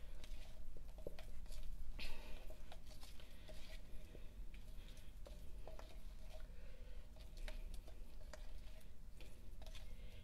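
A utensil stirring a thick paste of baking soda, cornstarch and white vinegar in a plastic beaker, making light, irregular clicks against the sides.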